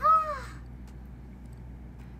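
A short, high-pitched vocal exclamation from a young woman, a single call that rises and then falls in pitch, lasting about half a second.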